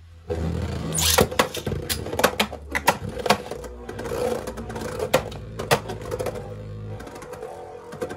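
Beyblade Burst tops spinning in a plastic stadium, a steady whir with a string of sharp clacks as they strike each other and the stadium wall, the loudest about a second in.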